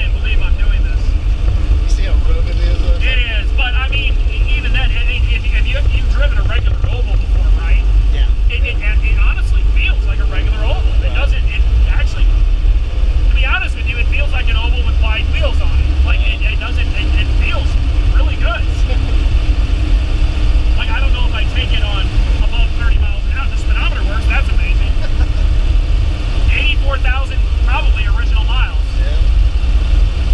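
Vintage VW Beetle's air-cooled flat-four engine running while the car is driven, heard inside the cabin as a steady low rumble, with voices talking over it.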